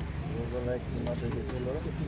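Faint voices talking over a steady low hum.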